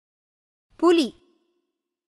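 A single short spoken word from a voice-over about a second in, with silence around it.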